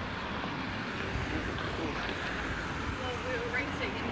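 Steady street ambience of road traffic, with faint voices of passers-by late on.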